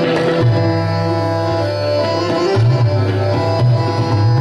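Hindustani classical accompaniment: tabla keeping the rhythm, its deep bass strokes bending in pitch, with harmonium over a steady tanpura drone.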